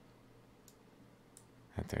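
Two faint, short clicks from a computer mouse during a near-quiet stretch, then a man's voice starts near the end.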